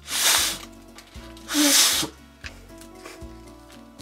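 Two puffs of breath blown into a folded paper origami figure to inflate its head, each about half a second long and about a second and a half apart.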